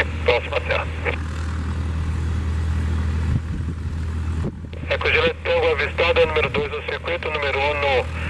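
Airband radio chatter in Portuguese heard through a scanner: a transmission ends about a second in, a stretch of steady radio hiss follows, and a new transmission starts about halfway through. A steady low hum runs underneath.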